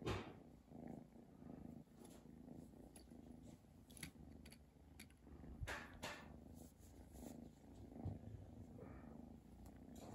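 Kitten purring softly and steadily throughout. A few brief light clicks and knocks come through the purr as it paws at a plastic toy.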